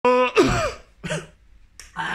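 A man coughing and clearing his throat after a vape hit, a few short rough coughs after a brief steady tone at the start, with a click near the end. He takes the harsh hit to mean the vape's output is too high and the wattage needs lowering.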